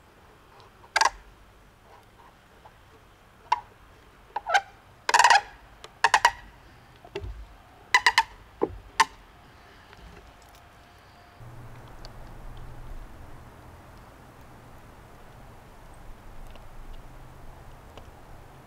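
Green-wood backpack-frame parts knocking against each other and the wooden bench: about a dozen sharp, ringing wooden knocks in quick clusters over the first nine seconds. After that there is only a steady low hum and a faint hiss.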